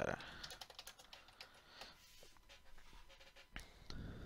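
Faint typing on a computer keyboard: a quick run of keystrokes in the first second or so, then scattered clicks, with one sharper click about three and a half seconds in.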